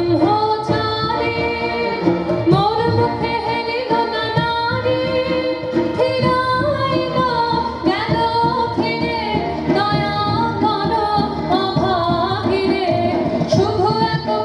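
A woman singing a Tagore song (Rabindrasangeet) live into a microphone, in long held, ornamented phrases, with instrumental accompaniment underneath.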